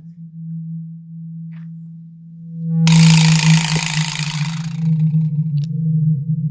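Background music: a steady low drone, with a burst of hiss-like noise about three seconds in that lasts roughly two seconds and then fades.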